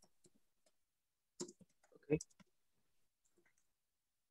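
Faint, sparse clicks of typing on a computer keyboard, with a short spoken "okay" about two seconds in.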